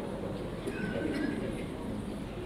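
Faint murmur of voices with no clear words: low-level chatter in the room.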